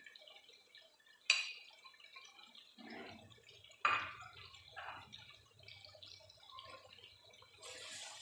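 Chopped tomatoes and spices frying in hot oil in a pot: a faint crackling sizzle with two sharp pops, about a second in and near four seconds. Near the end a metal ladle starts stirring, bringing a louder sizzle.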